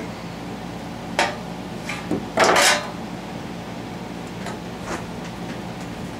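Metal parts and tools clinking and clattering against a sheet-metal drip tray as a brake master cylinder is handled and set down. There is a sharp click about a second in, a louder rattling clatter near the middle, and a few light ticks later on.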